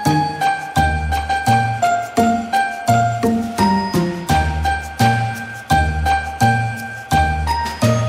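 Background music: bright, bell-like notes over a bass line, with new notes and chords starting at an even beat about every 0.7 seconds.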